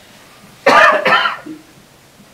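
A person clearing their throat once, short and loud, a little over half a second in.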